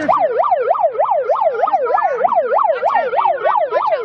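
Law-enforcement vehicle siren in yelp mode, its pitch rising and falling rapidly about four times a second.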